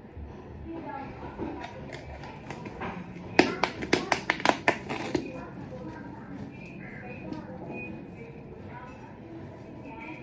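Small plastic Pepsi bottle crackling and clicking under the fingers as a sock is worked over its cut end. There is a quick run of about ten sharp clicks over some two seconds, about a third of the way in.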